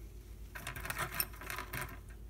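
Faint rustling and light scratchy clicks for about a second and a half, starting about half a second in: small handling noises, with no tool running.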